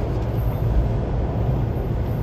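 Interior running noise of a JR Central 383-series limited express electric train under way: a steady low rumble with a faint hum, heard from inside the passenger car.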